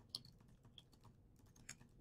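Faint keystrokes on a computer keyboard: a quick, irregular run of light clicks as a few words are typed.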